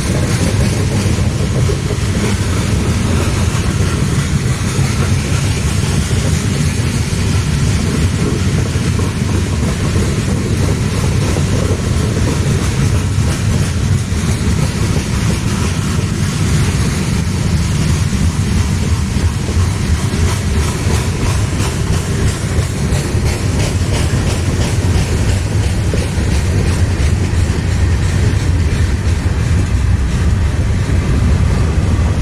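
CSX manifest freight train's gondolas and boxcars rolling past close by: a steady, heavy rumble of steel wheels on rail, with a clickety-clack of wheels over rail joints.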